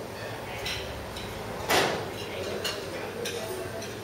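Pub room ambience: a low hum of background voices and faint clinks, broken by one brief, loud clatter a little under two seconds in.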